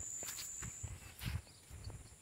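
Soft footsteps on a dirt path, a few faint low thumps, under a thin steady high whine that fades out about a second in.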